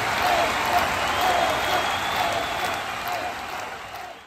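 Audience applauding, with scattered voices in the crowd, fading away near the end.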